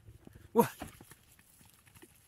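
Faint quick footfalls of a dog running on loose dirt, a run of light thuds after a short spoken 'What?'.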